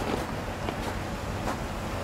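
A car engine idling steadily, a low hum under rushing wind on the microphone, with a couple of faint light ticks.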